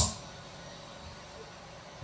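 A pause between a man's spoken phrases: only faint, steady room noise, with no distinct sound.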